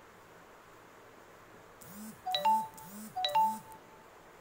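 A short electronic jingle of a few stepped tones, heard twice about a second apart, over faint room hiss.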